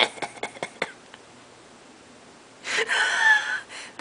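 A woman's breathy laughter tails off, then after a quiet pause comes a high-pitched squeal of fright, about a second long and falling in pitch.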